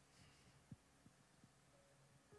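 Near silence: a faint low hum of room tone with a few soft ticks.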